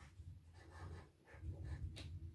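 Felt tip of a liquid chalk marker scratching across chalkboard foil, letters being written in a series of short separate strokes. The sound is faint, over a low background rumble.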